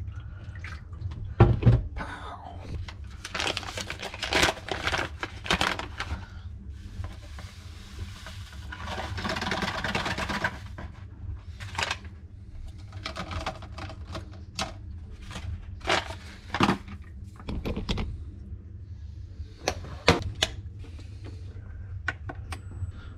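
Drip filter coffee machine being set up by hand: a run of clicks, knocks and clatter from its lid, water tank and glass carafe, with a few seconds of water pouring about halfway through.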